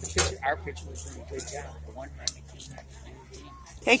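People talking in the background, with a steady low hum underneath and one brief sharp click about two seconds in.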